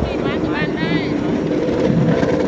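Steady rumble of an open vehicle under way, with a voice calling out in the first second and a steady engine hum coming up near the end.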